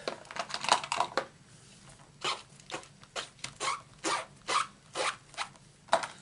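Rubber stamp being wiped clean on a cloth: a quick flurry of short rubbing strokes, then a run of evenly spaced strokes about two a second.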